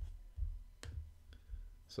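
A few sharp clicks at a computer, the loudest just under a second in, over a low steady hum.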